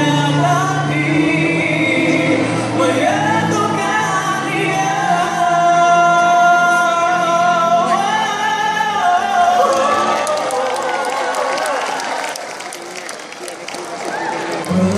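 Four-part mixed vocal group (bass, tenor, alto, soprano) singing in harmony through microphones, with a long held note in the middle; the singing ends about ten seconds in and audience applause follows.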